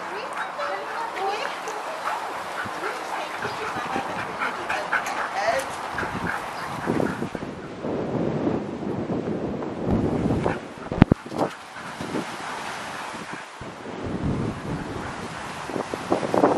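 Dogs vocalizing as they play: short, high, wavering calls through the first several seconds, then wind rumbling on the microphone, with a sharp click about eleven seconds in.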